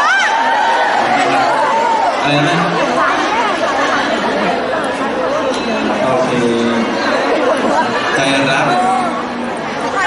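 Chatter of several people talking over one another.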